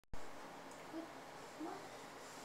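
Steady room hiss with two short, soft hums from a person, one about a second in and one near the end.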